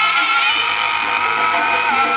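Live jaranan accompaniment music: a held melody line over the ensemble, sliding down in pitch near the end.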